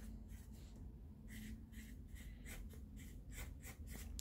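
Sharpie permanent marker writing on a sheet of paper: a quick run of short, faint strokes.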